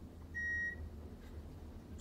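A single short electronic beep, one steady tone lasting under half a second, from the elevator car's fixtures, over a low steady hum.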